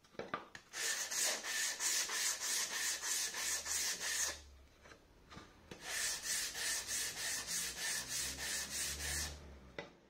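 A sandpaper-wrapped wooden block is rubbed by hand along a wooden rail in quick, even back-and-forth strokes, several a second. There are two runs of strokes with a pause of about a second and a half in the middle, and the strokes stop shortly before the end.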